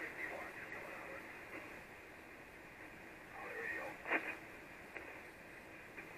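Hiss from an Icom IC-706MKIIG's receiver on the 75-metre band, the audio cut to a narrow voice passband. A faint, garbled voice comes through weakly a little past three seconds in, with a short crackle about four seconds in.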